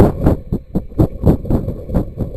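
Rapid, even thudding with rustle, about four knocks a second, from the rocket-mounted camera being jostled and knocked about close to the grass.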